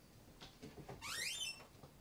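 Built-in fridge door being pulled open: a few faint knocks, then a short squeak rising in pitch about a second in.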